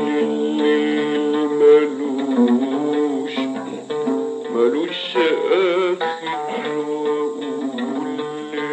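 A male voice singing long, held, ornamented notes in maqam nahawand, accompanied by a solo oud, in an old private recording.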